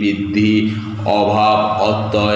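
A man's voice reciting a list of Sanskrit grammatical terms in a chant-like, sing-song way, with drawn-out, held syllables.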